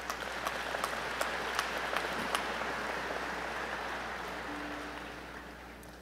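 Audience applauding, the clapping swelling in at the start and dying away toward the end.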